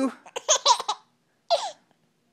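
A five-month-old baby laughing: a quick run of short laughs in the first second, then one more short laugh about a second and a half in.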